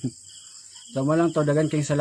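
Crickets chirping steadily in the background, with a man's voice starting about a second in.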